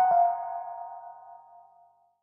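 1973 Rhodes Mark I electric piano: the last notes of a falling run land right at the start, and the final note rings on and fades away over about two seconds.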